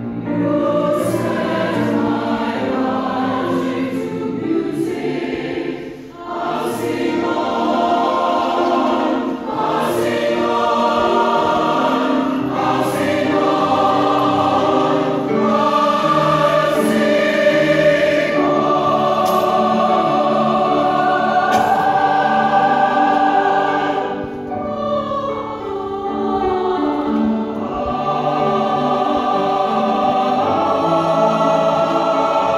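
Mixed choir of men and women singing a choral piece in parts, with held notes and crisp 's' consonants; the sound briefly dips at phrase breaks about six seconds in and again near 24 seconds.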